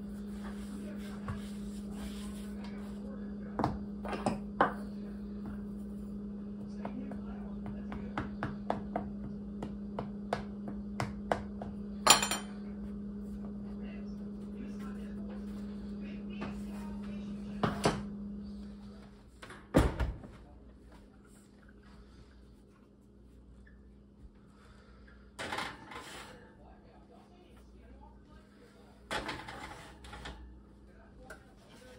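Small fluted metal pie pans clicking and knocking on a wooden table as the dough is pressed and trimmed off their rims, with one sharp metallic ring about twelve seconds in, over a steady low hum that stops about two-thirds of the way through. Then a heavy thump, and near the end a clatter as the oven is opened and a pie pan set on the rack.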